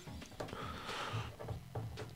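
Faint handling noise of a plastic action figure as its backpack is pressed onto the pegs on its back.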